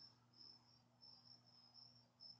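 Crickets chirping faintly: a high trill that pulses in short bursts, over a faint low steady hum.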